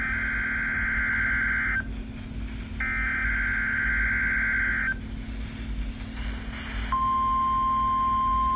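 A Midland NOAA weather radio's speaker sounding the Required Weekly Test: two buzzy, warbling data bursts of the EAS/SAME header, each about two seconds long with a second's pause between them. About seven seconds in, the steady single-pitch warning alarm tone begins and holds.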